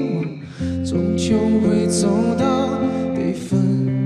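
A man sings a slow Mandarin pop ballad live into a handheld microphone over sustained instrumental accompaniment. The sound dips briefly about half a second in, between two sung phrases, before the voice comes back with vibrato.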